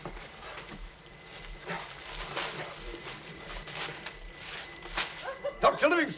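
Jungle sound effects: short animal calls and chirps coming at irregular intervals.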